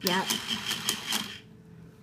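Battery-powered Design & Drill toy drill driving a plastic bolt into the toy race car, a motor whine with rapid clicking of about five a second that stops about one and a half seconds in.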